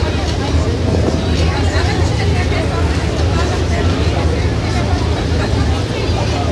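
Steady low drone of a passenger ferry's engine under way, with passengers talking over it.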